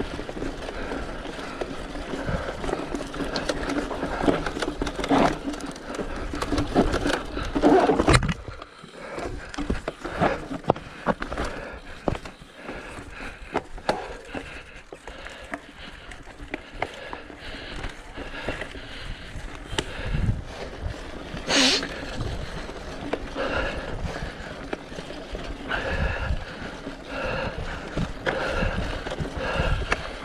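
Mountain bike ridden over a rough dirt forest trail: tyres rolling on dirt and gravel, with the bike rattling over bumps throughout. The loudest rattles come about eight seconds in, and there is a single sharp knock a little after twenty seconds.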